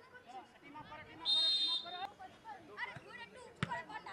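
Pitch-side sound of a football match: several voices calling out across the field, and a short, shrill referee's whistle blast of about half a second a little over a second in. Near the end comes one sharp thud of a football being kicked.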